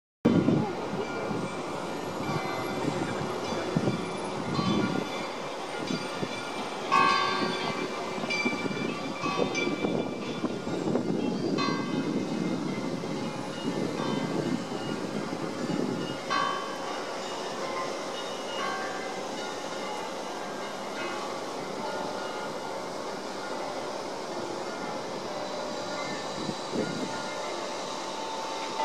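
Open-air city ambience with wind buffeting the microphone, strongest in the first half, and a few brief tones about 7, 11 and 16 seconds in.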